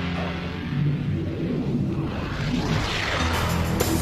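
Instrumental music with steady low sustained notes, and a whooshing swell that builds about two seconds in and peaks near the end.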